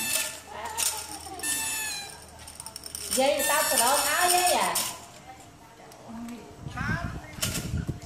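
High-pitched voices talking and calling in several short phrases, with a quieter stretch of low, irregular noise near the end.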